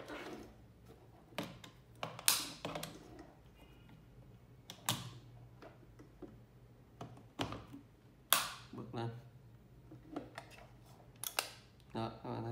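Scattered clicks, knocks and rustles of hands handling plastic smart-home devices and their cables, as a power plug is pushed into a power-strip socket; a few sharper clicks come near the end.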